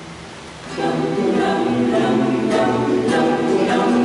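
Mixed choir singing a sacred piece with a strummed cuatro. Soft held notes open, then about a second in the full choir comes in much louder, with the cuatro strummed in a regular rhythm beneath the voices.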